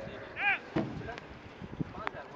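Polo play on a grass field: scattered knocks and thuds from galloping ponies' hooves and mallets, with one short high call that rises and falls about half a second in.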